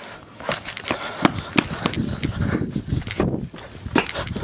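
Hurried footsteps of sneakers on asphalt: a string of irregular sharp knocks, roughly three a second.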